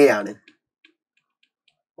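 A man's voice trails off, then a few faint, sparse ticks of a stylus tapping on a pen tablet as handwriting is written.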